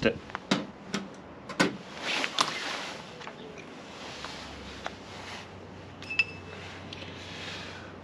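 Metal clicks and clinks of motorcycle clutch parts being handled as the pressure plate and its springs are taken off the clutch basket: a few sharp knocks in the first two and a half seconds, then quieter handling with a brief faint ring about six seconds in.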